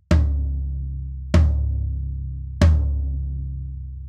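Low-tuned floor tom struck three times, about a second and a quarter apart, each hit ringing on with a long, slowly fading low tone. Its batter head is damped by small cut-up pieces of Evans EQ Pod gel placed near the edge.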